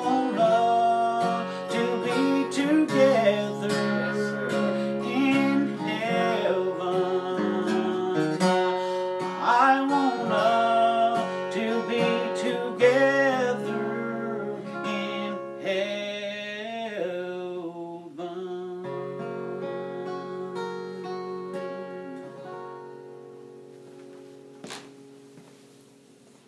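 Acoustic guitar playing the end of a gospel song, fading out gradually over roughly the last dozen seconds.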